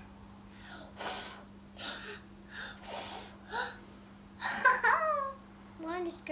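A child blowing short puffs of breath at a bowl of pancake batter, about five puffs over three seconds, then a brief high child's vocal exclamation.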